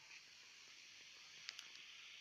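Faint, steady hiss of air escaping from a small inflatable vinyl globe beach ball being squeezed flat by hand, with a couple of faint clicks about one and a half seconds in.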